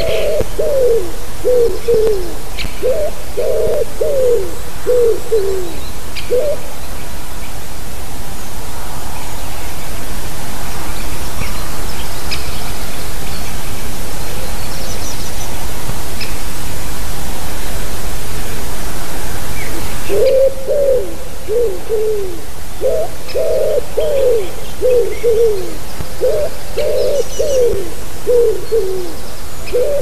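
Common wood pigeon singing, its repeated low cooing phrases running for the first six seconds or so, then starting again about twenty seconds in. In between, a steady hiss with no cooing rises and cuts off suddenly.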